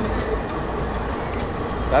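Steady low rumble of background traffic noise, with a few faint clicks.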